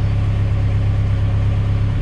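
A steady low hum like an idling engine, even in level throughout.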